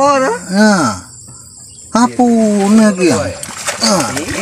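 A man's voice in drawn-out, wordless exclamations, with a steady high insect buzz heard faintly in a short pause between them.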